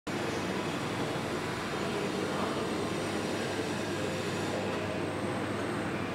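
Steady low-pitched background noise with no distinct events.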